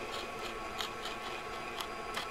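Faint scratching of a knife tip drawn along a vanilla bean to slit it open on a wooden cutting board, with a few small ticks.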